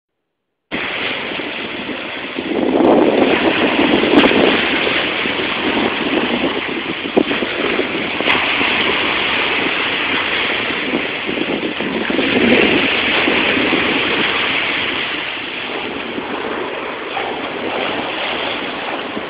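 Ocean surf: waves breaking and washing up over sand and rocks in a steady rush that swells louder twice.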